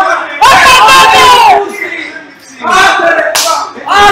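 Men shouting and cheering in excitement: two long, loud shouts, the first about half a second in and the second near the three-second mark, with a short lull between.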